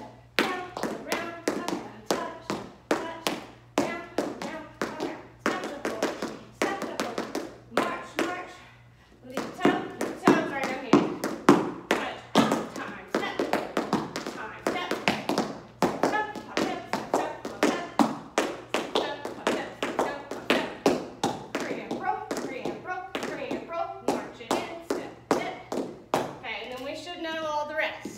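Tap shoes striking a hard studio floor in quick, rhythmic runs of taps as a tap routine is danced, with a brief pause about eight seconds in.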